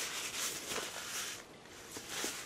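A person chewing a mouthful of chicken burger close to the microphone: faint mouth noises with a few soft clicks, dying down about one and a half seconds in.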